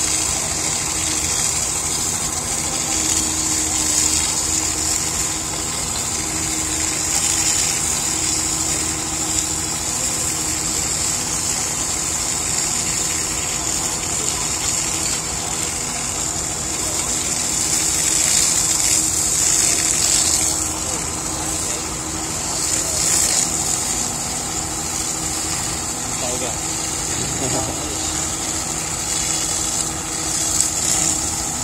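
A fire hose spraying water onto a burnt truck cab, a steady hiss, over an engine running steadily underneath.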